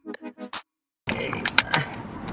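A quick run of about six sharp, evenly spaced clicks that cuts off suddenly about half a second in. After a moment of silence come rustling and a couple of knocks as someone climbs into a car seat.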